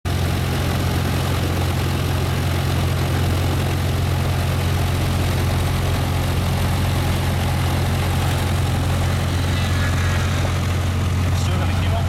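Light aircraft's piston engine idling steadily, heard from inside its cabin as a loud, even low hum.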